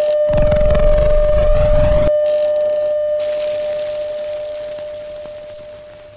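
A steady, single-pitched television test-card tone over static hiss, marking a break in transmission. The hiss is heavy for about the first two seconds, then drops away, and the tone fades steadily toward the end.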